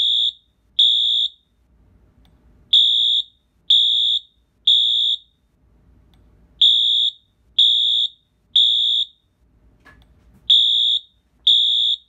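Wheelock AS-24MCC electronic fire alarm horn sounding the temporal-3 evacuation pattern: repeating groups of three high-pitched half-second beeps, about one a second, each group followed by a pause of about a second and a half.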